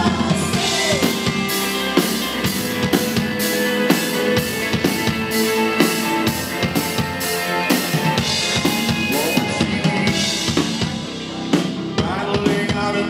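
A live rock band plays an instrumental passage without vocals, the drum kit to the fore with drums and cymbals keeping a steady beat.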